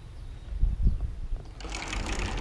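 Low bumps and rubbing on a handheld camera's microphone as the camera is turned around, with a rushing noise building near the end.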